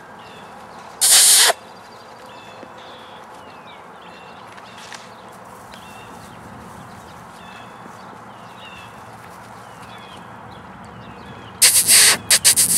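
A bird singing faintly in the background, repeating a short chirped phrase about once a second. A sharp loud burst of noise comes about a second in, and a cluster of loud noise bursts near the end.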